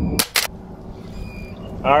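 A steady low hum cuts off abruptly just after the start, followed at once by two sharp clicks a fifth of a second apart; a man's voice begins near the end.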